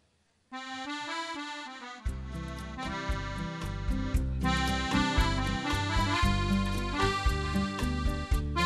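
Arranger keyboard playing the intro of an old-time dance song in an accordion voice, beginning about half a second in; a bass line and drum beat join about two seconds in.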